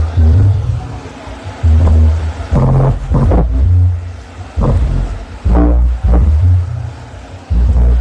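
Bass-heavy music played very loud through a paredão, a towering wall of loudspeakers, during a sound test. Deep bass notes come in blocks about a second long with short gaps between them, and a vocal line sits on top.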